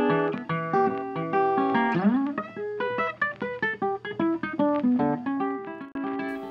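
Background music: a guitar picking out a steady run of single plucked notes.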